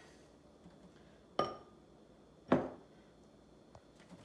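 Two sharp clinks about a second apart, a basting brush knocking against a small glass bowl of melted butter. The first has a brief ringing.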